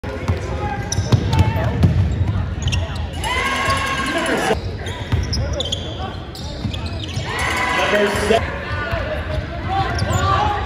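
A basketball bouncing on a hardwood gym floor during live game play, with players' and spectators' voices calling out over it.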